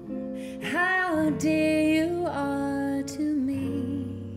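A woman singing into a handheld microphone, accompanied by acoustic guitar: a few sung phrases with long held notes over the guitar.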